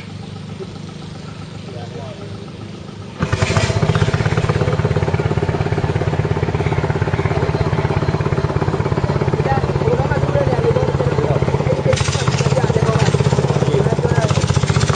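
A small boat engine running slowly, then opening up suddenly about three seconds in to a loud, steady, fast chugging as the boat gets under way along the river.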